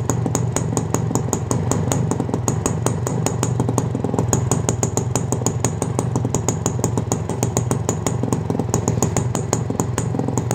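Honda motorcycle engine idling steadily, heard at the exhaust silencer outlet: a low, even exhaust note with a sharp, rapid, regular ticking over it, which the owner puts down to the CDI ignition unit.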